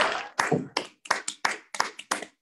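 A quick, uneven run of sharp hand claps, with short gaps between them.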